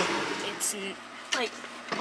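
Mostly low room sound, with a couple of short snatches of a voice and a few light clicks.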